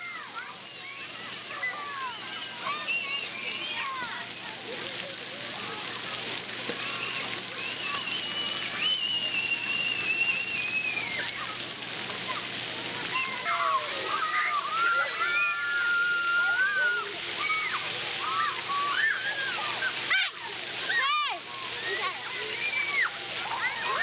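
Children's voices shouting and squealing over the steady hiss and splashing of water jets at a splash pad.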